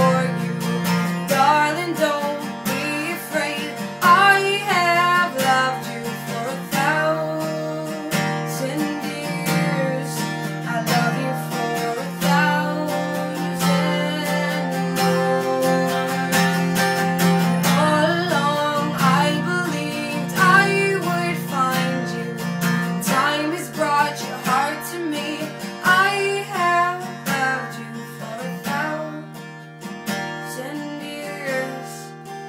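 A woman singing a slow ballad while strumming an acoustic guitar, the voice gliding between sustained notes over steady strummed chords.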